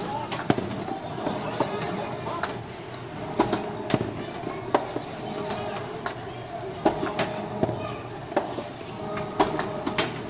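Hard balls knocking and clacking in an arcade ball-rolling game, in irregular sharp hits about one or two a second. Under them runs a steady din of chatter and machine noise.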